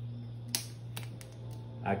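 A small plastic spice container being handled: one sharp click about half a second in, then a few lighter clicks, over a steady low hum.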